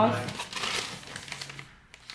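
A long paper receipt rustling and crinkling as it is handled and unrolled, fading out near the end.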